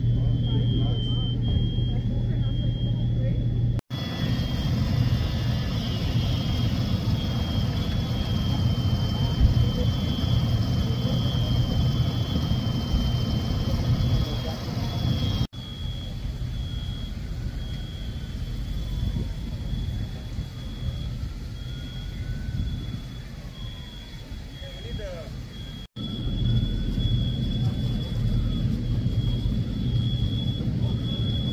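Outdoor ambience with a steady low hum of running engines, a thin continuous high-pitched tone and faint voices. The sound changes suddenly three times, at cuts between shots.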